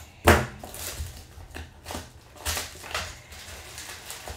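Trading-card packaging being handled and torn open by gloved hands: crinkling and ripping of foil pack wrappers and cardboard. One sharp rip about a third of a second in is the loudest, followed by several shorter crinkles.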